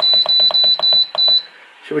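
Andrew James halogen oven's control panel beeping as the timer button is pressed and held, the minutes stepping up: a steady high beep pulsing about five times a second that stops about one and a half seconds in.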